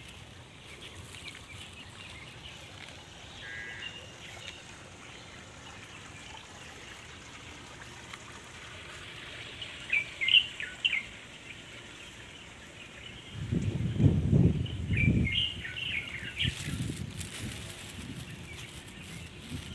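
Small birds chirping in scattered short bursts over faint outdoor background noise. A low rumbling noise comes in for a few seconds near the end and is the loudest sound.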